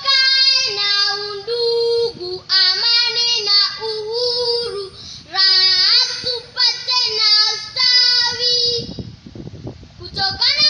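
A young girl singing unaccompanied, in long held notes with short breaks between phrases.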